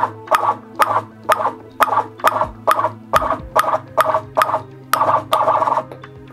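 A ping-pong ball bouncing repeatedly on a robot-held table tennis paddle, about two sharp taps a second, coming a little quicker near the end. A low steady hum runs underneath.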